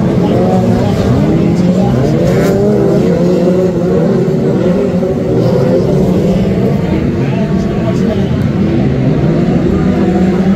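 Several Brisca F2 stock car engines running together on the track, loud and steady, their pitch rising and falling as the cars accelerate and ease off.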